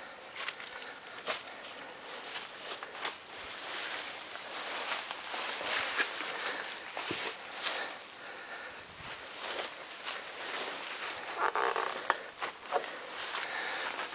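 Rustling and crackling of dry weeds and leaves underfoot, with scattered sharp clicks, as someone walks through brush.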